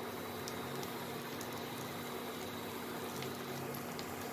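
Vegetable pancake frying in oil in a pan: a steady sizzling hiss with a few faint pops. A faint steady hum runs underneath.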